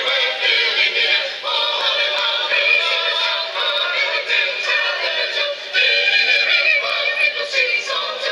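A choir singing a Christmas song in sustained chords, changing chord about a second and a half in and again near six seconds.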